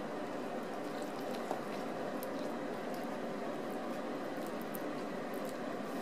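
Steady background noise of a small room, a low even hiss with a few faint scattered clicks, and no speech.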